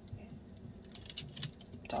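Small knife cutting soft maraschino cherries in half on parchment paper over a wire dehydrator tray: a scatter of faint, quick clicks and taps as the blade works through the fruit and meets the tray.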